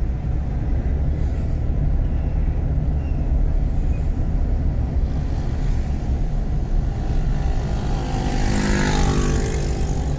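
Car driving through city traffic: steady low engine and road rumble, with a brief hissing swell near the end.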